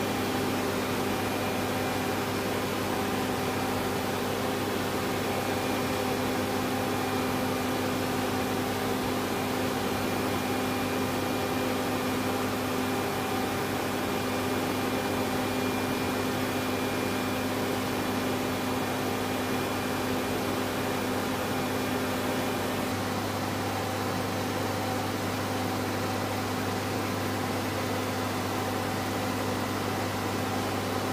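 Steady mechanical hum and hiss of running machinery, with several fixed tones, shifting slightly about three quarters of the way through.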